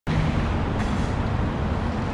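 Steady city street noise of road traffic going by.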